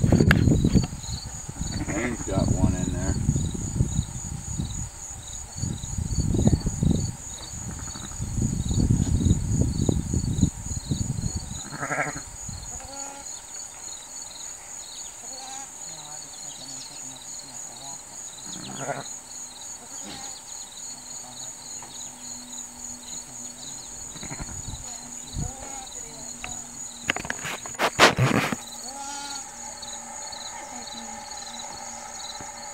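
Sheep, a ewe with her newborn lambs, calling low and soft in the first ten seconds, over a steady, rhythmic chirping of insects. A short loud rustle comes near the end.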